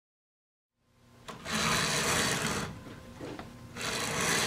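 Silence, then two bursts of a rapid rasping, rattling mechanical sound, each about a second and a half long.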